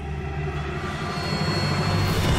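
Ominous background music for a drama: a low, steady rumbling drone that grows slightly louder.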